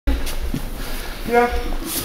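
Speech: one short spoken word over a steady low rumble of hall background noise.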